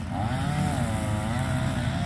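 Gas string trimmer's small engine running, its pitch wavering up and down with the throttle.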